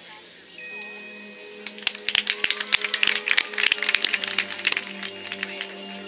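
Marching band show music: low tones held steadily under a rapid, irregular clatter of clicking percussion from about two seconds in to four seconds in.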